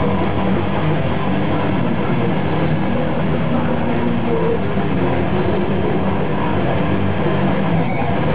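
Heavy metal band playing live at full volume: a dense, unbroken wall of guitars, bass and drums.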